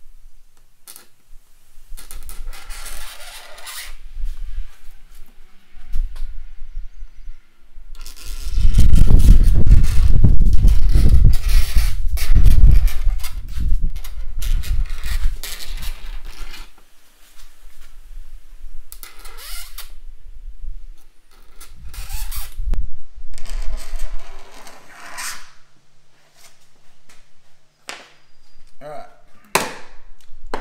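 Acrylic scoring cutter drawn again and again along a plexiglass sheet against a clamped straightedge, making repeated scraping strokes to score it for snapping. The longest and loudest scraping comes around the middle.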